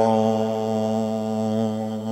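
A man's solo chanted elegy: one long held note at a steady pitch, sung into a microphone, easing off slightly near the end.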